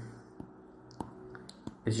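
A few sharp, isolated clicks of a computer mouse, about three, spread across a pause in speech over a low background.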